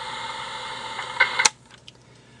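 Steady background hiss that ends with a sharp click about one and a half seconds in, after which it is much quieter.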